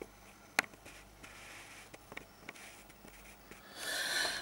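Small handling noises in a quiet room: one sharp click about half a second in, a few fainter clicks later, and a soft rush of noise near the end.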